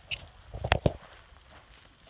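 A single high tongue click urging the horse to walk on. About three-quarters of a second in comes a brief low rumble with two sharp knocks close together, the loudest sound here.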